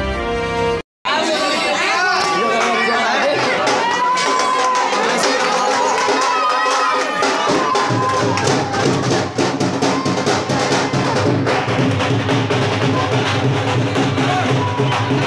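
Intro music that cuts off abruptly about a second in, followed by a lively crowd talking and shouting over band music. A heavy, steady drumbeat comes in at about eight seconds in and carries on.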